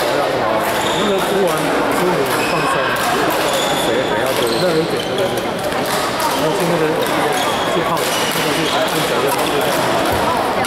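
Badminton hall ambience: a constant hubbub of voices from players around the courts, broken by sharp racket hits on the shuttlecock and brief high squeaks of court shoes.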